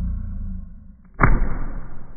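A phone thrown down hard onto a carpeted floor: a low rushing noise as it is flung, then a heavy thud as it hits the carpet a little over a second in.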